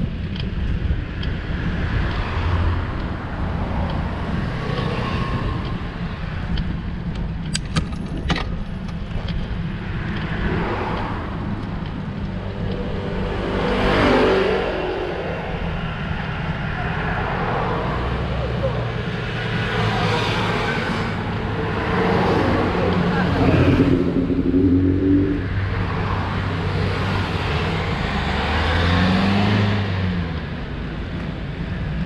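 Cars passing close by on the road one after another, each swelling and fading away, the loudest passes about halfway through and again three quarters of the way in, over a steady low rumble. A few sharp clicks come about eight seconds in.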